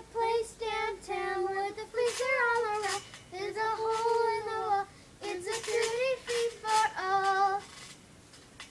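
A child singing a tune unaccompanied, in short phrases with some long held and gliding notes.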